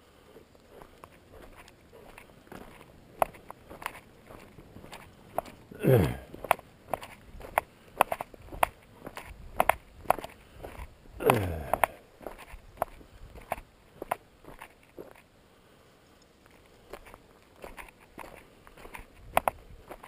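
Footsteps crunching on a gravel road at a steady walking pace. Twice, about six and eleven seconds in, a louder short sound slides down in pitch; these are the loudest moments.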